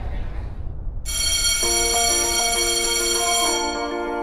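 Background music: a bright bell-like chime strikes about a second in and rings on, fading near the end, while a melody of short mallet-like notes steps along beneath it.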